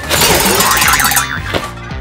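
Cartoon comedy sound effect: a sudden crash-like hit followed by a wobbling boing, over background music.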